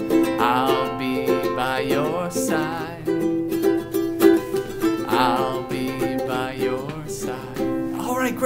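A ukulele is being strummed in a steady rhythm while a man sings long wordless notes with vibrato over it.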